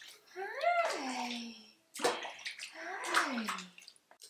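Water splashing and sloshing in a plastic infant bathtub, with a baby cooing twice, each coo a long glide that rises and then falls in pitch.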